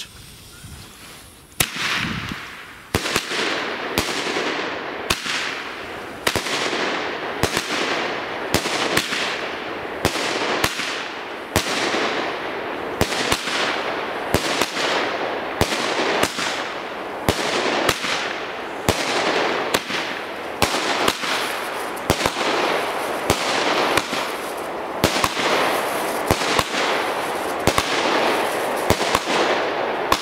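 Small consumer fireworks cake firing its shots one after another. After a second or so of fuse hiss, sharp launch pops come at a slow, even pace of about one to two a second, each followed by a fading crackling hiss as the stars burst.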